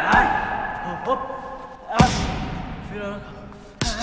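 Boxing gloves striking padded focus mitts: three sharp smacks, the loudest about two seconds in and another just before the end. Short voiced sounds of effort and a music bed run between the strikes.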